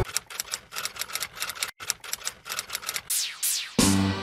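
A quick, irregular run of light clicks like typing, then a few high sweeping sounds, and music with a deep bass comes in near the end.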